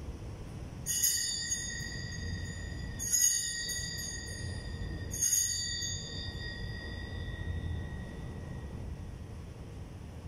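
Altar bells rung three times, about two seconds apart. Each ring is high and bright and fades slowly. They mark the elevation of the consecrated Host at Mass.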